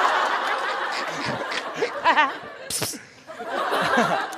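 A live studio audience laughing together, loudest at the start and dying down over about three seconds, with one short, sharp burst from the crowd shortly before the end.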